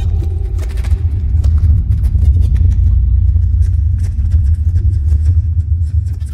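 A loud, steady low rumble with scattered clicks and crackles over it; a faint held tone fades out in the first second.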